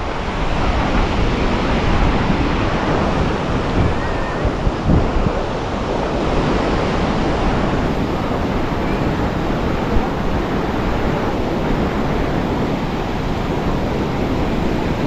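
Sea surf breaking on a sandy beach, a steady rush of waves, with wind buffeting the microphone.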